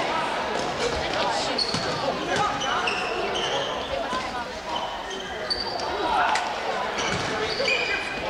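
Basketball being played on a hardwood gym floor: the ball bouncing and sneakers giving several short, high squeaks, over a steady background of spectators' voices.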